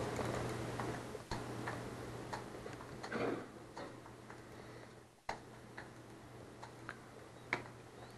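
Faint, irregular clicks from a computer mouse and keyboard, one every half second or so, as a web page file is opened for editing. A low steady hum sits underneath.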